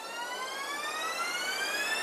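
A single synthesized tone in a hip hop track's break, rising slowly and steadily in pitch and growing louder, a riser that builds back into the beat.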